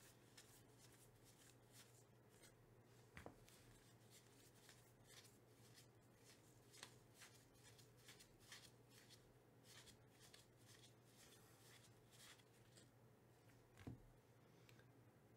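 Faint papery flicks and slides of baseball trading cards being flipped through by hand, one card after another, with a slightly sharper snap about three seconds in and another near the end.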